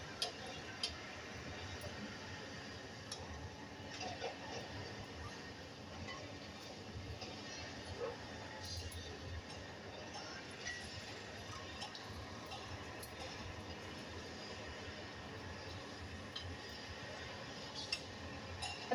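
Quiet kitchen room tone with a few faint, scattered light taps and clinks as fingers stuff spice masala into slit okra pods on a steel plate.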